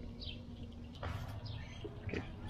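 A few short, faint bird chirps over a low background hum, with a soft rustling noise starting about halfway through.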